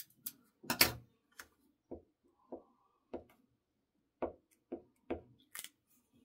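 Paper-crafting handling sounds: short sharp clicks and taps of scissors, paper strips and a glue stick being handled on a worktable, about ten in six seconds, the loudest about a second in.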